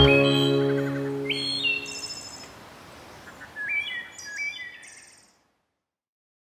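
The song's final chord rings out and fades away over about two seconds, while birds chirp in two short groups of calls; everything stops a little past five seconds.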